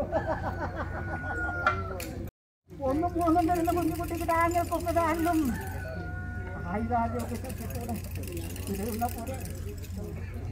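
Voices calling out in long, drawn-out, chant-like phrases over a steady low hum. The sound cuts out completely for a moment about two and a half seconds in.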